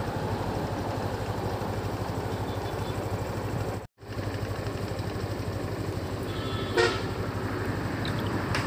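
A vehicle engine running steadily with an even low pulse, and a short horn toot about seven seconds in.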